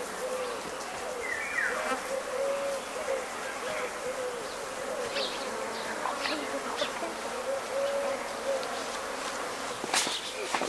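Insect buzzing, its pitch wavering up and down, with a few faint high chirps in the background.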